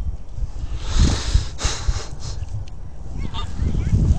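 Wind rumbling on the microphone, with a loud rustling scrape of wood chips about a second in, as the chips are dug into or stepped on.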